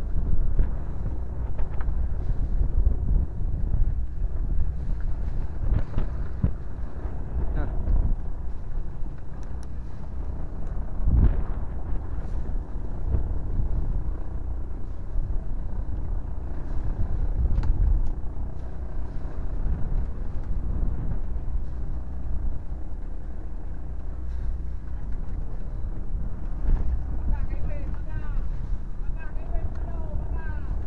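Steady low rumble of a small fishing boat's engine running, with a single knock about eleven seconds in.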